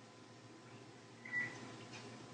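Faint steady background hiss, broken by one short high-pitched blip a little over a second in.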